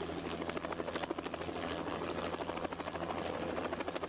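Helicopter rotor noise: a steady low hum with a fast, even chop running through it.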